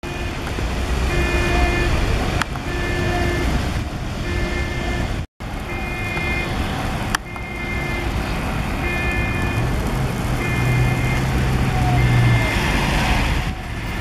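A vehicle's reversing alarm beeping steadily, about once a second, over street traffic noise and idling diesel engines. A heavy engine's hum swells near the end.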